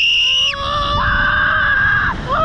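Two riders screaming together as the Slingshot reverse-bungee ride launches them skyward: a high shriek and a lower long yell, held over a low rush of wind.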